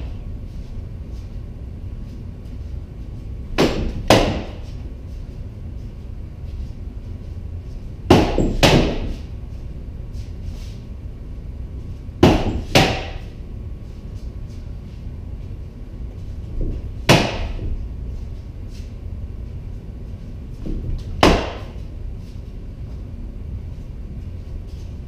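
Rattan sword striking a pell post: eight sharp knocks, mostly in quick pairs about half a second apart, coming every four seconds or so.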